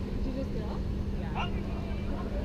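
Steady low rumble with a constant hum inside a large air-supported sports dome, typical of the blower fans that keep the dome inflated, with faint distant shouts from players across the field.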